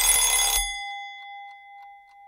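Timer-end bell sound effect marking the end of the countdown: a loud ring for about half a second, then a single clear tone that fades away over the next second and a half.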